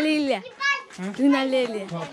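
Young children's voices: a few high-pitched, drawn-out calls and chatter.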